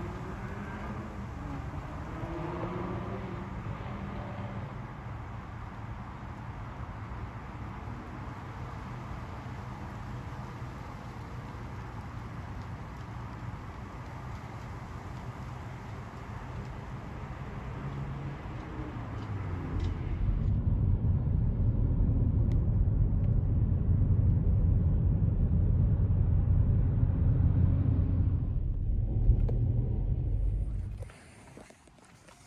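Steady low rumble of street traffic in the open air. About two-thirds of the way through it switches abruptly to a louder, deeper road rumble, as heard from inside a moving car.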